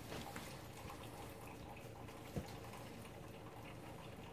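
Quiet room tone with faint handling of playing cards and one short click about two and a half seconds in.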